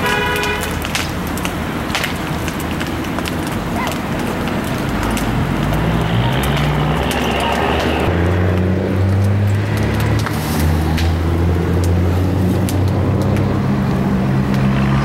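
Outdoor street noise with a motor vehicle engine running. From about five seconds in, its low hum shifts in steps, over a steady hiss and scattered clicks.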